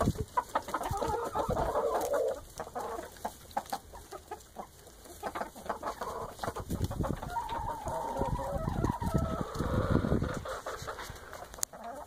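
Mixed flock of Rhode Island Red, Ameraucana and Jersey Giant chickens clucking and calling, with two longer drawn-out calls, one early and one around eight seconds in, and short ticks between them.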